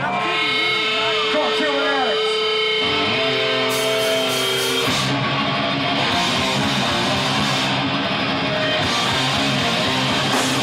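Live hardcore band starting a song: distorted electric guitar squeals and bends over a held feedback note, then cymbal crashes about four seconds in. From about halfway, the full band plays heavy distorted guitar with drums.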